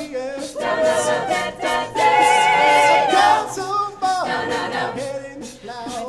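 A mixed a cappella vocal group singing a song in harmony with no instruments. About two seconds in, a voice holds one long note with vibrato over the others for about a second.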